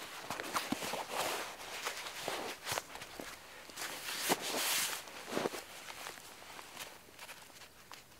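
A rolled canvas bundle being handled and pressed down on a forest floor: cloth rustling and dry pine needles and twigs crunching in irregular bursts, loudest about four to five seconds in and quieter near the end.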